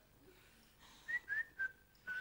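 A person whistling briefly: a few short notes stepping down in pitch, starting about a second in.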